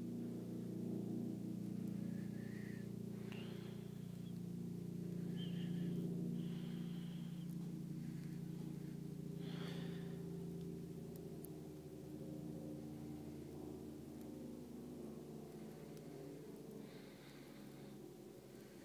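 A low, steady hum of several tones that slowly fades, with a few faint, short rustles of Cat5e wire pairs being untwisted by hand.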